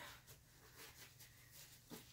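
Near silence, with faint soft rustles of paint-covered gloved hands being wiped on a paper towel.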